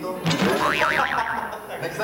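A springy, cartoon-style 'boing' sound effect: a tone that wobbles up and down in pitch several times for about a second, starting a quarter second in, over voices.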